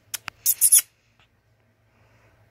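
A borzoi puppy shifting and rolling over on its blanket-covered bed: two sharp clicks, then a brief scratchy rustle of claws and fabric just under a second long.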